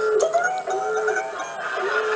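A man's voice in a high, drawn-out falsetto that wavers in pitch, imitating a chicken to act out the word he lacks, heard through a television's speaker.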